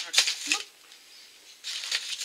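Packaging rustling and crinkling as it is handled, in two bouts: one at the start and another near the end, with a quieter gap between.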